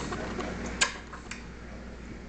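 A baby's mouth smacking and sucking on a lemon wedge: a sharp click a little under a second in, then a fainter one about half a second later.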